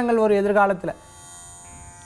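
A man speaking Tamil for about the first second. Then comes a short pause holding only faint, steady background noise.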